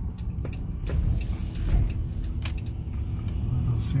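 Car driving slowly, heard from inside the cabin: a steady low rumble of engine and tyres with a faint steady hum, and a brief hiss about a second in.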